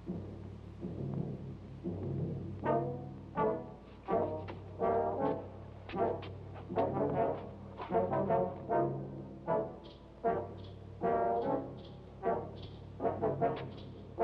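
Dramatic orchestral score led by brass: repeated short brass chords, one about every second or less, over a low steady drone, starting a few seconds in.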